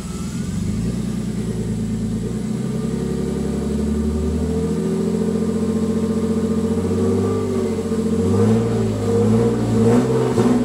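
BMW M50TU inline-six, freshly swapped into an E30 and on its first run, running above idle while the throttle is worked by hand at the throttle body. The engine note rises and falls in several gentle revs.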